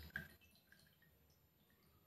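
Whey dripping from a squeezed cloth bundle of chhena into a steel bowl of whey: two small drips in the first quarter second, then near silence with a few faint drips.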